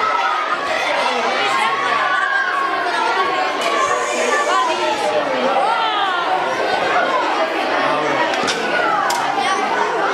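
A crowd of children chattering at once, a steady babble of many overlapping voices echoing in a large hall.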